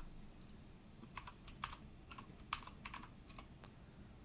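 Faint, irregular clicking of keys being pressed, about a dozen light taps, as numbers are keyed in to add them up.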